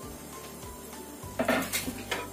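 Background music, with a brief loud clatter of kitchenware against the frying pan about one and a half seconds in.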